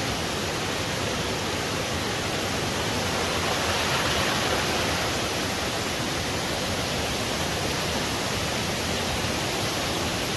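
Creek water rushing over rock ledges and small cascades: a steady, even rush that grows slightly louder about four seconds in.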